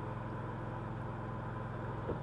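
Lincoln Ranger engine-driven welder running steadily under welding load, with the even hiss and crackle of a 7018 stick-welding arc over its hum.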